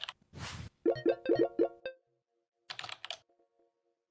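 Sound effects for an animated logo: a short whoosh, a quick run of about six pitched pops, then a brief burst of keyboard-like typing clicks near the end.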